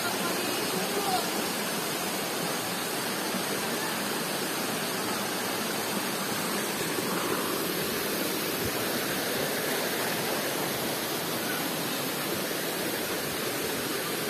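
A shallow, rocky stream of water rushing steadily over the stones.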